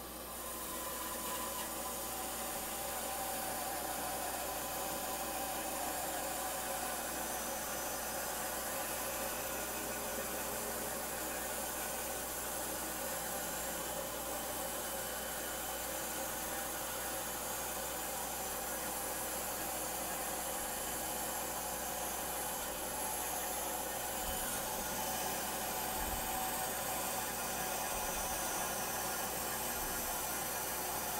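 Shop dust collector and bandsaw running: a steady rushing hiss with a faint whine, and a few low thumps near the end.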